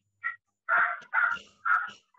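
Three short, sharp animal calls in quick succession, about half a second apart.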